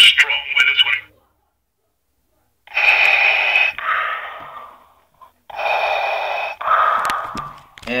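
The talking Darth Vader plush keychain's small speaker playing Vader's mask breathing: two slow breaths about three seconds apart, each a hiss in followed by a fainter hiss out.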